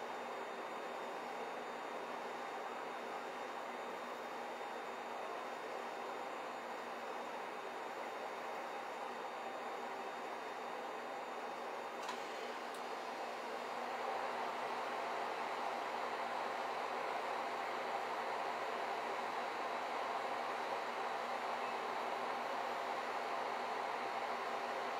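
Steady background hiss of room noise with a faint hum, growing a little louder about halfway through.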